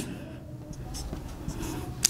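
A marker pen drawing on a whiteboard: several short, separate strokes as dashed lines are marked in.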